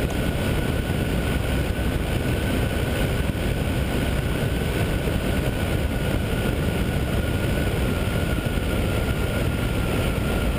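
Ultralight trike in flight with the engine throttled back to idle for a power-off descent: a steady rush of wind and engine noise. A thin, steady whine sits over it.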